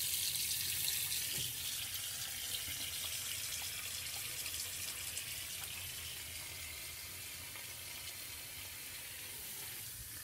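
Tap water running into a bathroom sink while soapy hands are washed under it: a steady hiss that slowly grows a little quieter.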